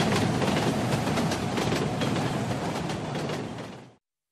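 A steady rumbling noise with faint regular clicks, fading out to silence near the end.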